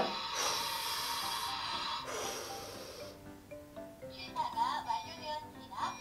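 Kongsuni toy rice cooker venting with two hisses of about a second each, then playing a short tune from about three seconds in, its signal that the cooking is done.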